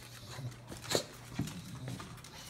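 English bulldog moving about close by on a tile floor, with one sharp click about a second in and a softer one shortly after, over a faint steady low hum.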